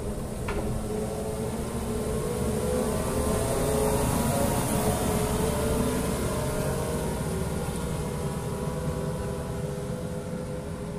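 Diesel engine of a 2018 Atlas 160W wheeled excavator running as the machine drives past. It grows louder to a peak about halfway through, then fades as the machine moves away.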